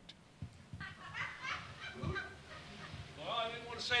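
Congregation laughing faintly, with a few soft low thuds of footsteps, building toward the end as a man's voice comes back in.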